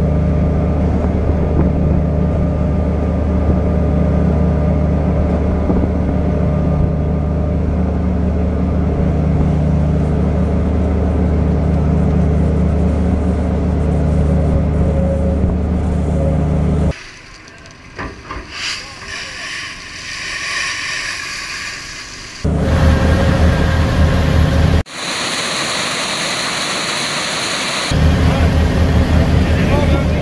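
Steady low drone of a purse-seine fishing vessel's engine and machinery. About two-thirds of the way through it breaks off abruptly, and a few seconds each of quieter hiss and louder noise follow before the low drone returns near the end.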